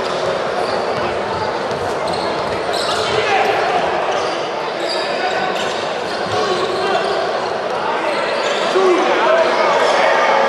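Basketball being dribbled on a hardwood court, with crowd voices and shouts echoing through a large sports hall.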